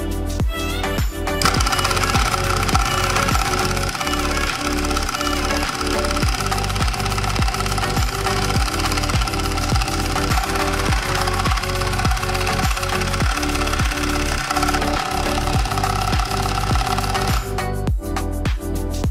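Homemade scroll saw driven by a 775 DC motor, switched on about a second and a half in and running unloaded with a steady whine and a fast rattle of the reciprocating blade. Its whine drops in pitch a little near the end, and it stops just before the end, over background music with a steady beat.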